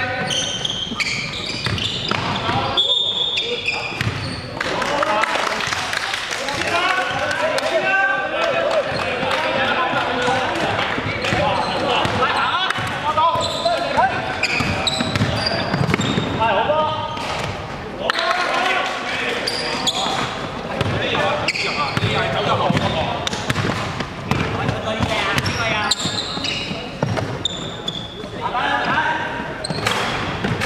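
Basketball being dribbled and bounced on a hardwood court, with short sharp impacts throughout, mixed with players' voices calling out across the game, all echoing in a large gymnasium.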